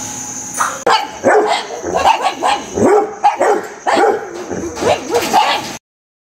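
A dog barking and yipping in a quick run of short calls, two or three a second, which cuts off suddenly near the end.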